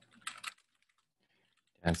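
Typing on a computer keyboard: a quick run of keystrokes in the first half second, then a few faint taps. Speech starts near the end.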